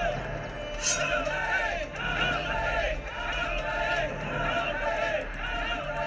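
Film soundtrack: voices in short, repeated rising-and-falling phrases over music, coming in regular groups about every half second.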